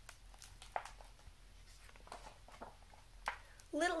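Paperboard picture-book page being turned and handled: a few faint, scattered paper rustles and light taps.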